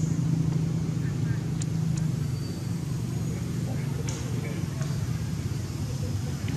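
A steady low motor hum with faint voices over it, and a few light clicks.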